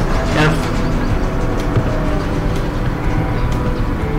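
A steady low background rumble, loud and unbroken, with faint steady tones above it and a short spoken syllable near the start.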